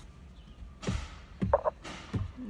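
A woman's audible breath about a second in, followed by a brief pitched vocal sound, over a low steady rumble.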